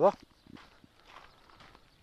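Faint footsteps of a person walking on a dirt and gravel track.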